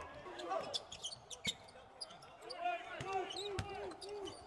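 Live court sound of a college basketball game: a basketball bouncing on the hardwood floor in scattered sharp knocks, with players' voices calling out on the court and no crowd noise.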